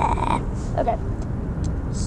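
Steady low rumble of a moving car, heard from inside the cabin, under a brief laugh.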